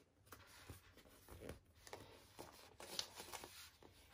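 Faint rustling and crinkling of a paper sticker sheet as stickers are peeled off and pressed onto a magazine page, with scattered small clicks, the sharpest about three seconds in.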